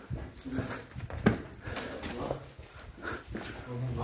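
Effortful sighs ('of') and heavy breathing from a person squeezing through a tight rocky cave passage. Scrapes and a sharp knock about a second in come as body and phone brush against the rock.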